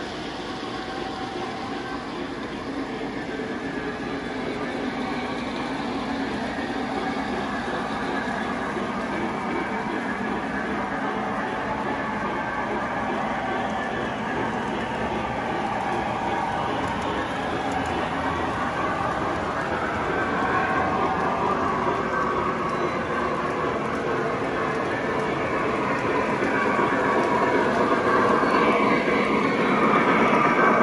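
O gauge model trains running on three-rail track: a steady rumble and clatter of wheels and motors on the rails, getting louder near the end as a Lionel Santa Fe 5011 model steam locomotive passes close.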